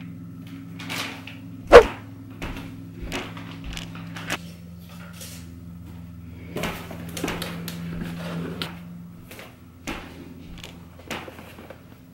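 Rummaging in a closet: scattered knocks, clicks and rustles of cardboard boxes being taken off a shelf and handled, the loudest a sharp knock about two seconds in, over a steady low hum.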